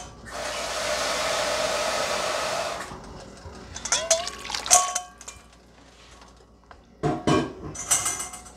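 Water poured into a large pot of rice and broth in a steady rush lasting about two and a half seconds, then a few light clinks and scrapes of a spatula against the pot.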